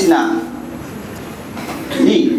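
A man's short vocal exclamation through a handheld microphone and the hall's speakers at the start, then a low, even hum of amplified room noise.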